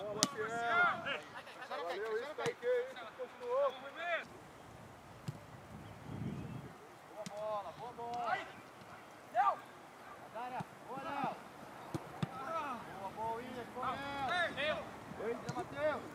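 Footballers' voices shouting and calling out across an open training pitch during a passing drill, with a few sharp knocks of the ball being kicked.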